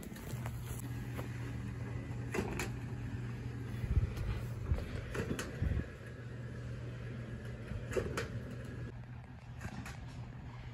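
Pumpkin Carv-O-Matic animatronic Halloween prop running its conveyor belt: a steady low motor hum with scattered knocks and clicks as the pumpkins are carried along.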